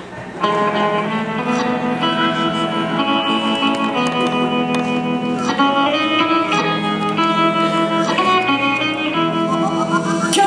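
Instrumental backing music with guitar starts abruptly about half a second in and plays the song's introduction in held chords, changing chord twice.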